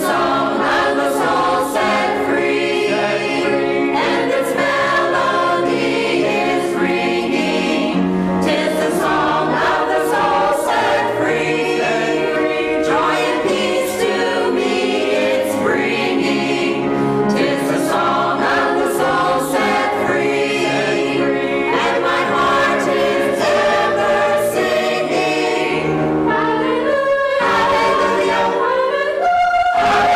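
Church choir of men's and women's voices singing a hymn in harmony, without a break.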